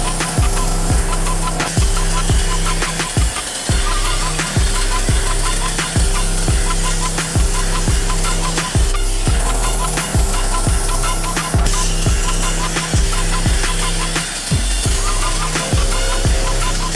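Background music: an electronic track with a steady drum beat and deep held bass notes.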